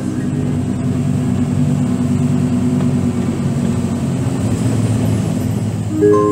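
Heavy truck's engine running steadily while driving, a low drone with a slight shift in pitch about two-thirds of the way through.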